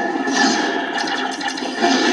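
Loud rushing noise from trailer sound effects played back through a speaker, with a faint steady tone running beneath it.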